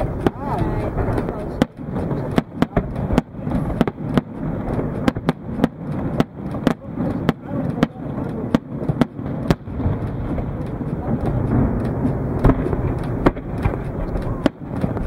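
Aerial firework shells bursting one after another at irregular intervals, with many sharp bangs, often more than one a second.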